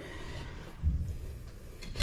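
Quiet room tone with one soft, low thump about a second in and a faint click near the end.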